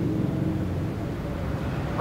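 A steady low rumble of background noise with no clear events.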